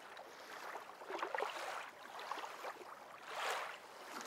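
Faint water lapping and sloshing in a small pool, in irregular swells, a little louder about three and a half seconds in.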